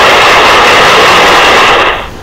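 A loud, steady rushing noise, typical of a slide-show sound effect played as the chosen answer is highlighted, cutting off suddenly just before two seconds in.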